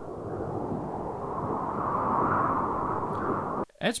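Wind sound-effect sample playing back, a spooky, rushing wind that swells louder through the middle and then cuts off suddenly near the end as the preview is stopped.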